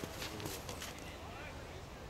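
A few crunching steps on snow in the first second, from a skier shuffling on skis and poles, with faint voices under them. After that, only a low steady background.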